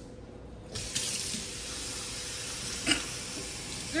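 Kitchen faucet running into a stainless steel sink: a steady rush of water that pauses at the start and comes back on just under a second in.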